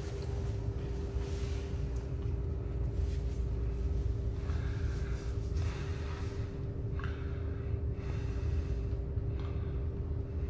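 Fujitec EZShuttle elevator car travelling down: a steady low rumble inside the cab with two steady humming tones.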